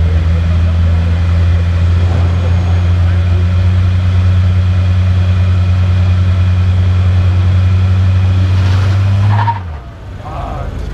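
A car engine idling with a steady, unchanging low drone, then dropping in pitch and cutting out near the end.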